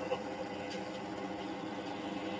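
Faint, muffled voices over a steady hiss, with no distinct event.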